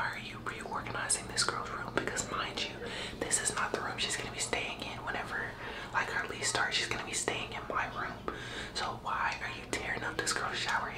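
A woman whispering to camera in a low, hushed voice, with no voiced speech.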